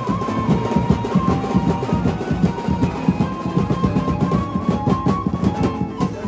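Live banjo-band music: a keyboard playing a held, wavering melody line over a busy drum-kit beat.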